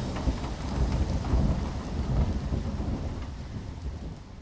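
Thunderstorm sound effect: a low, rolling rumble of thunder with a hiss of rain, fading out gradually toward the end.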